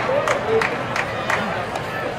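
Ballpark spectators clapping in a steady rhythm of about three claps a second, which stops near the end, over crowd chatter.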